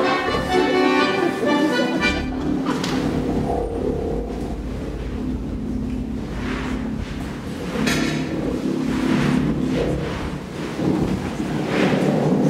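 Layered theatre sound-design soundscape: held musical tones give way about two seconds in to a steady low rumble under a sustained drone. Swells of hiss rise and fall several times over it.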